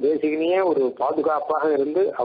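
Only speech: a man's voice talking without a pause.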